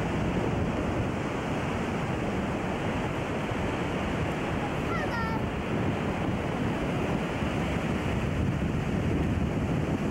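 Waterfall on the Yellowstone River heard close at the brink: a steady, even rush of falling water that does not let up.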